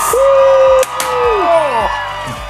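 Two handheld confetti cannons going off with sharp pops in quick succession, a little under a second in. A man's voice holds a long "ooh" before the pops and whoops with falling calls after them.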